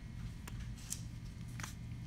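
A few faint, light clicks of small metal parts being handled as a worm gear is worked on a small motor shaft, over a steady low hum.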